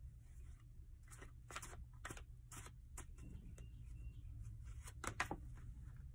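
Tarot cards being handled: a few faint, short rustles and light taps, scattered and then a quick pair near the end, over a low steady hum.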